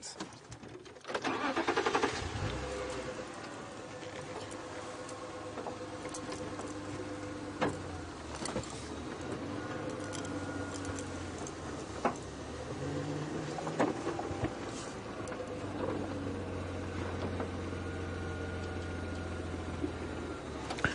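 Open safari game-drive vehicle's engine starting about a second in, then running steadily at a low hum as the vehicle moves off, with a few sharp knocks along the way.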